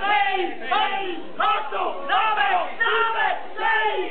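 Men playing Sardinian morra (murra), shouting their number calls loudly as the hands are thrown. About seven short shouts come in a quick, even rhythm, a little under two a second.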